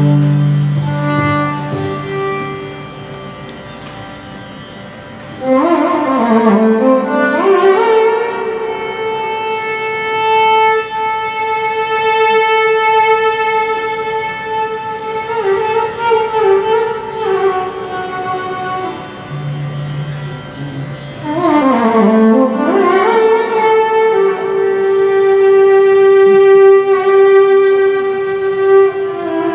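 Carnatic violin playing a slow raga alapana in raga Kapi: long held notes joined by wide sliding ornaments, with sweeping runs up and down about six seconds in and again near twenty-two seconds.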